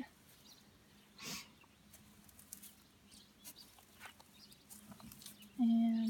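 Mostly quiet outdoor ambience with faint scattered ticks of footsteps and phone handling, and a short rush of noise about a second in. Near the end a voice holds one flat-pitched sound for about half a second.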